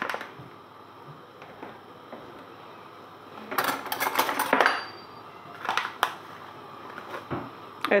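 Crinkling of a plastic-foil spice packet being handled and opened, in a crackly burst about a second long near the middle, with a shorter rustle a couple of seconds later.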